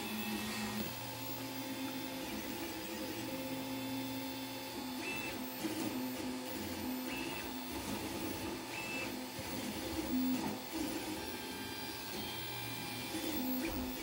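Home-built large-format 3D printer running a print: its stepper motors whine at shifting pitches as the print head moves, over a steady hum, with a few brief higher-pitched tones.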